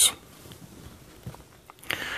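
Faint small clicks of a component being pressed into a solderless breadboard by hand, a few of them in the second half, in an otherwise quiet room.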